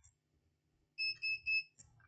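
Three short, high-pitched beeps from a digital multimeter, starting about a second in, as its probes are placed on the circuit board.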